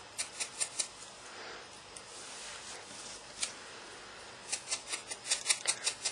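A foam sponge dabbing ink onto cardstock bird cutouts: quick light pats, about six a second, in a run at the start and again near the end, with a softer rubbing in between.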